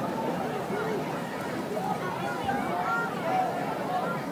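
Crowd at a football stadium: many distant voices talking and calling out at once, a steady murmur with no single voice standing out.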